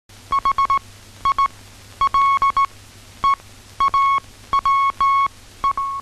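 Morse code signal: a single high beep tone keyed on and off in groups of short and long beeps, the dots and dashes of a telegraph message being received.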